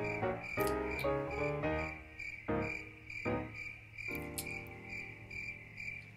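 Crickets chirping in a steady, even run of pulses, over soft plucked-string music whose notes die away about two thirds of the way through.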